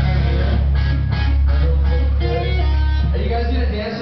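Live rock band playing loud electric guitar chords over a heavy sustained bass; the low end cuts off suddenly just before the end as the band stops.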